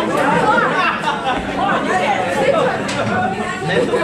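Many people talking at once: a roomful of overlapping conversation and chatter, with no single voice standing out.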